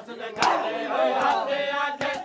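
Men chanting a noha together, with bare-hand slaps on bare chests (matam) striking in time: one sharp slap about half a second in and lighter slaps after it.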